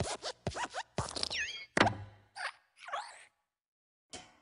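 Cartoon sound effects of the Pixar logo's hopping desk lamp squashing the letter I: a quick run of springy squeaks, creaks and thuds, some sliding down in pitch, with the loudest thump just under two seconds in. The sounds stop a little before the end.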